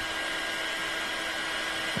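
Craft heat embossing tool running steadily, its fan blowing hot air onto embossing powder to melt it, with a steady high whine over a rushing hiss.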